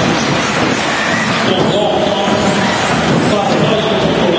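Several 1/10-scale electric 4WD RC racing buggies running together, the whine of their motors and gears rising and falling with throttle over a steady din.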